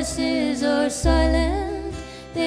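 Several voices singing a slow song in close harmony, with a low sustained bass note underneath; the phrase pauses briefly twice.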